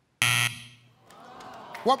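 Family Feud game-show buzzer sounding once for about half a second: the Fast Money reveal that the answer scored zero points. A faint audience murmur follows.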